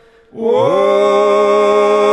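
Georgian men's vocal ensemble singing unaccompanied polyphony: after a short pause the voices enter together about half a second in, sliding up into a chord that they hold steadily.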